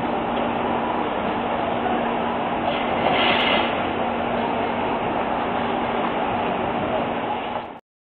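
City street traffic noise with a steady engine hum, and a brief hiss about three seconds in. The sound cuts off suddenly just before the end.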